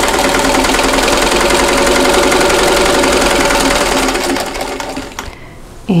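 Vintage Singer sewing machine running at a steady speed as it stitches a seam through two layers of cotton fabric, then slowing and stopping about four to five seconds in.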